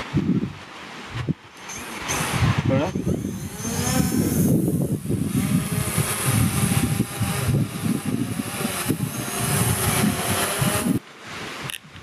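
Quadcopter drone's propellers whining, the pitch bending up and down as the motors change speed, over wind buffeting the microphone. The sound cuts off sharply about a second before the end.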